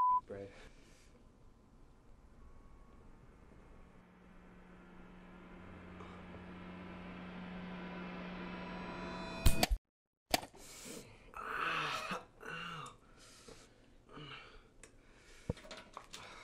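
A rising swell builds for several seconds over a low steady hum and ends in one sharp, loud snap of a mousetrap springing shut on a hand. After a half-second break of dead silence, a man groans and laughs.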